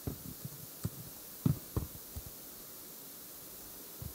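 Irregular, muffled low thumps from hands working a laptop keyboard, picked up through the surface by a handheld microphone that has been set down, over a faint hum. About six knocks come in the first half, then it goes quiet.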